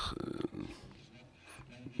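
A brief low, murmured voice sound at the start, then faint room tone in a pause in the speech.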